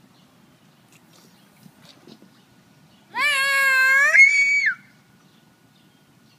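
A toddler's single high-pitched squeal, about a second and a half long, starting about three seconds in and turning shriller just before it stops.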